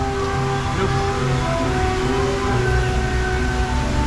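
Droomvlucht dark ride's soundtrack music with long held notes that change every second or so, over a low rumble from the moving ride.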